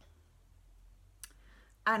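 A single short click over a faint low room hum, then a woman begins speaking near the end.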